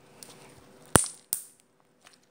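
Slime popping as it is squeezed and folded in the hands: two sharp pops about a second in, the second close after the first.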